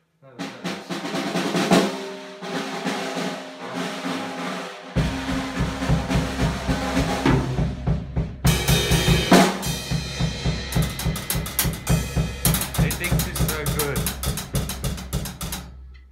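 Pearl drum kit played in a steady groove of kick, snare and cymbals. About five seconds in, a deep bass part joins, with a loud crash a few seconds later and fast rolls near the end, before everything cuts off suddenly.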